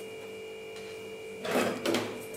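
Steady electrical hum. About one and a half seconds in, a brief rustle and rub of cotton cloth as a folded, cut kerchief is opened out and slid on a wooden tabletop.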